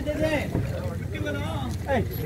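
Indistinct men's voices talking in an outdoor group, with a steady low rumble of wind on the microphone.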